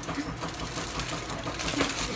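Aluminium foil crinkling as it is folded and crimped by hand, a dense run of small crackles.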